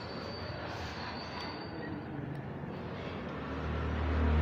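Steady background rumble and hiss that grows louder toward the end, with a thin high-pitched whine through the first half.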